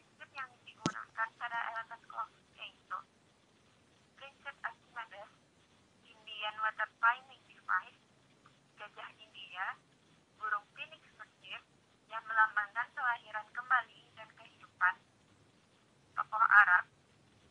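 Speech: a voice talking in phrases with short pauses, thin and narrow-band like a telephone line. A single sharp click about a second in.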